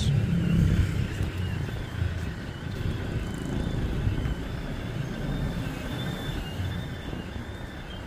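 Car engine and tyre rumble heard from inside the cabin while driving slowly, a steady low rumble.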